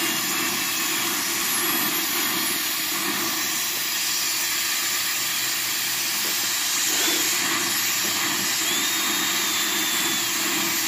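Dental high-volume suction running with a steady rushing hiss, over the thin whine of an air-driven high-speed dental handpiece cutting a crown prep on a lower molar, its pitch dipping and rising slightly under load.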